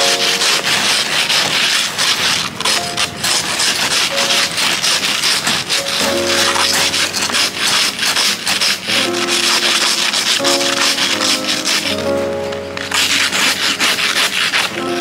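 Ice scrapers scraping ice off a car's windshield and roof in rapid, continuous rasping strokes, with a brief let-up near the end. Background music with held notes plays throughout.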